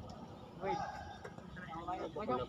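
Faint men's voices talking at a distance, in short bursts with pauses between them.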